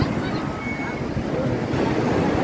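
Ocean surf breaking and washing up a sandy beach in a steady rush, with wind buffeting the microphone.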